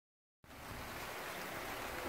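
Light rain just starting to sprinkle: a steady, soft hiss that sets in about half a second in.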